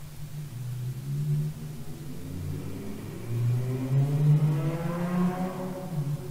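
A vehicle engine speeding up, its pitch rising steadily through the second half.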